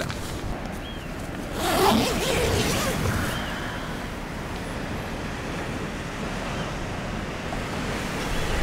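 Wind and small waves washing onto a gravel lakeshore: a steady rushing noise, with a louder rush about two seconds in.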